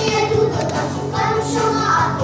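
Young girls singing a song together over musical accompaniment, with a steady low bass note running underneath.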